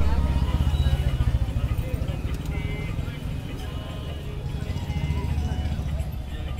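Low, pulsing rumble of a motor or engine running close by, loudest in the first second, with voices and faint music in the background.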